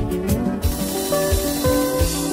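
Live konpa band playing an instrumental passage with a regular beat and held notes. A steady hiss spreads over the top from about half a second in.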